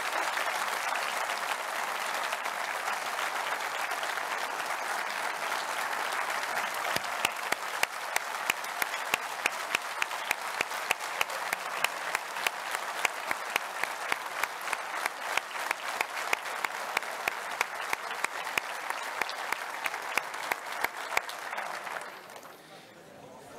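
Hall full of delegates applauding. About seven seconds in the clapping falls into a steady rhythmic unison beat of roughly three claps a second, which stops abruptly at the end.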